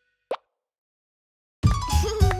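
A single short pop, a cartoon sound effect, about a third of a second in, between stretches of silence. Near the end a children's song's music starts up.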